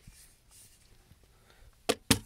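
Faint, near-quiet handling noise, then one sharp knock shortly before the end.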